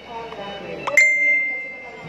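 A single bright bell-like ding about a second in, ringing out and fading away. It is likely an edited-in chime that comes with an on-screen title.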